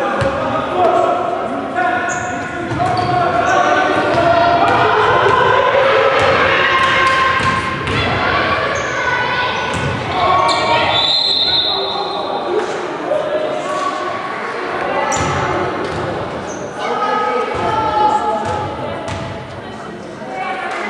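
Basketball bouncing on a hardwood court during play, with many short sharp impacts, echoing in a large sports hall. Voices of players and onlookers carry on throughout.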